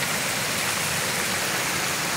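Floodwater rushing past in a fast current, a steady, even rushing noise.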